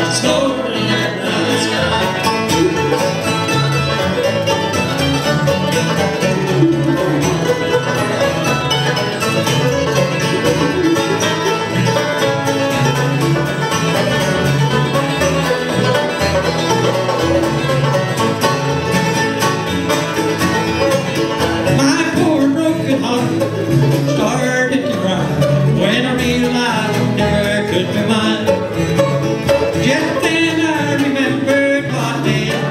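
Live acoustic bluegrass band playing: banjo, dobro, acoustic guitar, mandolin, fiddle and upright bass together at a steady, full level.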